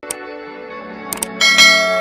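Subscribe-button sound effect: two quick clicks a little over a second in, then a bright ringing bell chime that fades slowly, over sustained musical tones.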